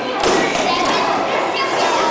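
Many children's voices chattering at once in a large echoing hall, with a single thump about a quarter of a second in.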